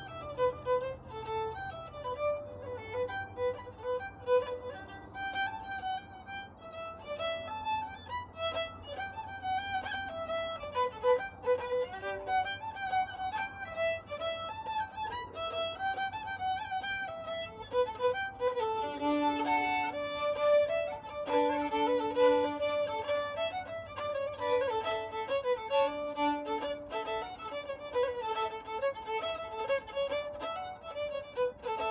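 Solo fiddle playing a fast Irish dance tune, a quick unbroken run of bowed notes. In the second half, a lower note sounds at times together with the tune.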